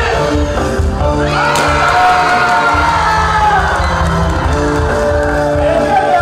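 Loud live wedding-band music: a sung or played melody held in long notes over a steady bass beat, with the crowd cheering and whooping.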